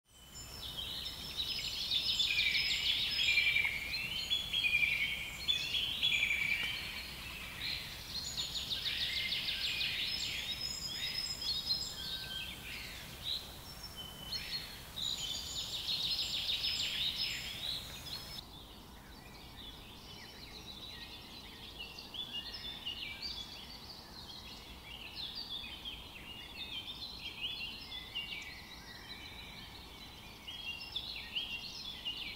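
Woodland birds singing, several songs overlapping, with a loud trilling song coming about every six seconds. About eighteen seconds in the sound cuts to a fainter, busier chorus of chirps.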